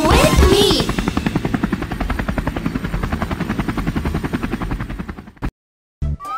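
Cartoon helicopter sound effect: a rapid, even rotor chop that fades away over about five seconds and stops suddenly. It follows the closing sung note of a children's song in the first second.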